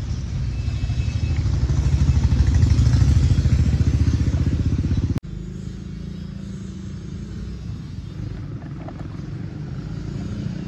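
An engine running with a fast, even chug. It is loud for the first five seconds, then cuts off suddenly to a quieter, steady run.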